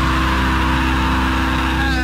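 Nu metal band playing: distorted guitars and bass hold a low chord under a harsh, noisy wash of sound, with a short sliding pitch near the end.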